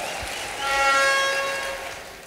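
A brief rush of noise, then a single steady pitched note held for about a second and fading out near the end.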